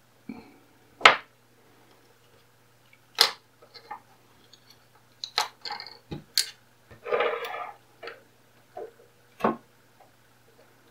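Crocodile-clip test leads and a copper-wire coil handled on a tabletop: a few separate sharp clicks and knocks as clips are unclipped, reattached and parts set down, with a short rustle of wire about seven seconds in.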